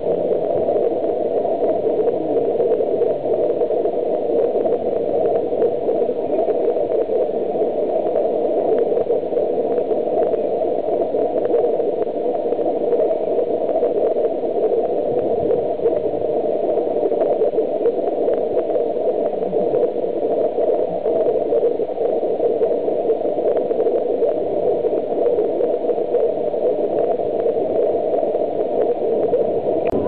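A steady, even rushing noise that runs without a break or change.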